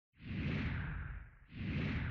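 Two whoosh sound effects, one after the other, each swelling up and fading away over about a second and a half.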